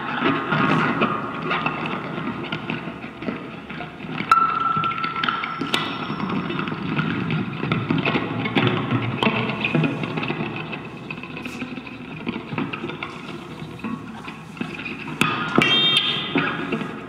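Freely improvised guitar playing: a dense, irregular run of plucked and struck string sounds with clicks instead of a melody, a short held high tone about four seconds in, and a quick rattle of ticks near the end.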